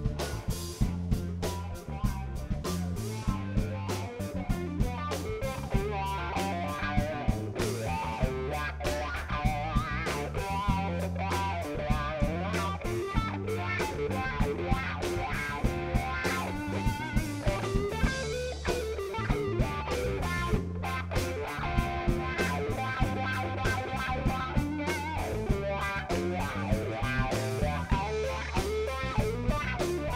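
Live blues band playing an instrumental break led by electric guitar, over drum kit, bass guitar and keyboard, with a steady drum beat.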